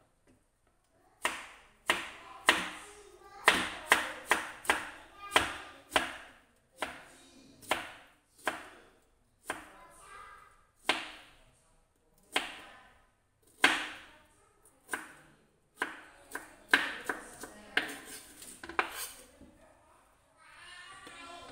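Kitchen knife slicing bamboo shoots into strips on a plastic cutting board: a run of sharp knocks as the blade strikes the board, starting about a second in, one to two a second, coming quicker near the end.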